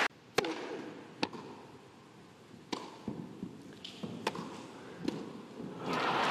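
Tennis ball being hit back and forth on a grass court: five sharp pops of racquet strikes and bounces, spaced about a second apart, over a low crowd hush.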